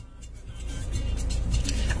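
A low vehicle rumble, heard from inside a car, growing louder from about half a second in.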